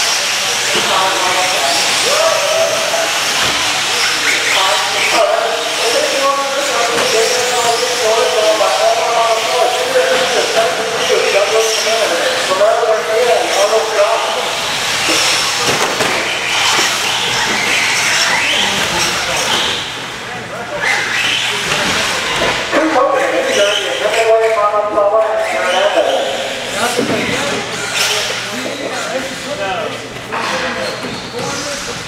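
Radio-controlled 4x4 short-course trucks running on an indoor dirt track, a steady hiss of motors and tyres, with indistinct voices in a large hall.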